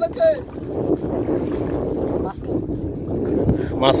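Wind buffeting the microphone over small sea waves washing against the rocks at the water's edge, a steady rushing noise.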